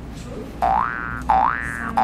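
Cartoon "boing" sound effect: three quick rising glides, one after another about two-thirds of a second apart, starting a little past half a second in.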